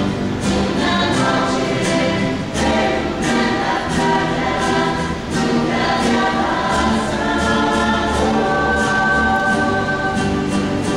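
A rondalla of guitars and double bass playing, with the ensemble singing in chorus: sung notes held over strummed guitar chords.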